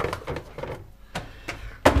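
A plastic laundry detergent bottle being put back on a shelf: a few light knocks and clatters, then a louder thump near the end.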